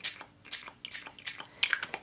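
Paper towel being crumpled and handled: a string of irregular crinkly crackles.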